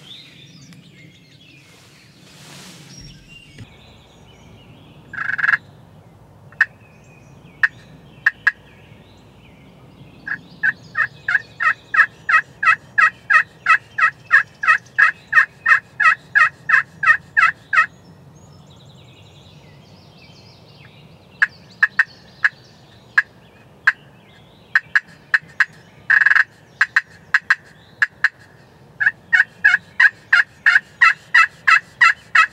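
Turkey call sounding hen yelps. There are a few single notes, then a long even run of sharp yelps at about two to three a second, then more scattered notes and a short run near the end.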